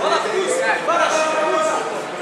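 Men in the crowd shouting long, drawn-out calls, with overlapping held voices rising and falling in pitch.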